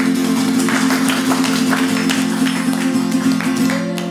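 Acoustic guitar strummed in steady, ringing chords, with no vocals over it.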